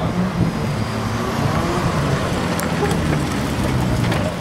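Drift car engine running hard up close, its low hum wavering in pitch as the revs rise and fall, under a heavy rush of noise.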